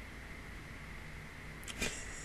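Steady low microphone hiss and hum with a faint high-pitched whine. Near the end, a short sharp breath into the microphone as a laugh begins.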